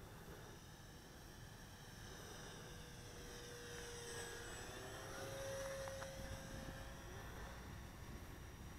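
Electric RC model warbird's brushless motor and propeller whining faintly as it makes a low pass. The sound builds to its loudest a little past the middle and then eases off, with the pitch shifting as it goes by.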